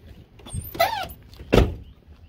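A brief high squeak with a wavering pitch, followed about half a second later by a single dull thump.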